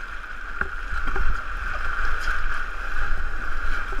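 Steady rush of whitewater rapids around a paddled inflatable boat, with a few brief paddle splashes near the start.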